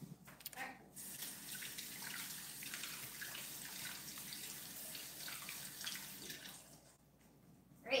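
Faint sink tap running steadily for about six seconds, then shut off: hands being rinsed clean of wet toy snow.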